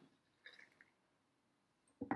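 Near silence, with a few faint brief sounds about half a second in.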